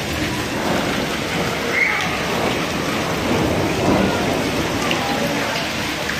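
Hailstorm: a dense, steady patter of hail falling on the ground and hard surfaces.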